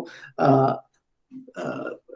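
A man's voice making two short, low, throaty vocal sounds between phrases, heard through a video call's audio.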